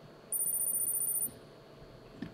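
A high-pitched electronic tone from the Kahoot quiz game's scoreboard as the players' scores tally up. Two thin pitches sound together with a fast flutter, held for about a second before cutting off.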